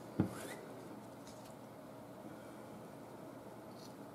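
A single short thump about a quarter second in, as a paper card and scissors are handled on a wooden desk, followed by faint paper handling and quiet room tone.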